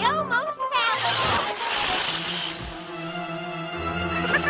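Cartoon film score with held orchestral notes, broken about a second in by a hissing, swishing burst of sound effect that lasts about a second and a half, with warbling gliding tones just before it.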